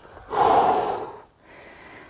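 A man's forceful exhale, one breathy rush lasting about a second, breathed out with the effort of pulling an ab wheel back in from a rollout.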